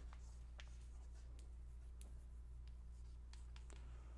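Chalk writing on a blackboard: faint scattered taps and short scratches over a steady low hum.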